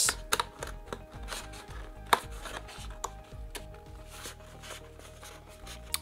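Stiff cardboard pieces of a flat-pack microphone stand being slid into one another, rubbing and scraping with scattered light taps, one sharper tap about two seconds in.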